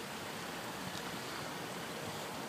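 Steady, even outdoor background noise, a faint hiss with no distinct events in it.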